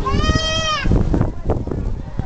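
A single high-pitched, drawn-out call lasting under a second, steady in pitch, over low rumbling and handling noise.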